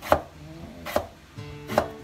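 Kitchen knife chopping a raw potato into french-fry strips: three sharp strikes, evenly spaced a little under a second apart.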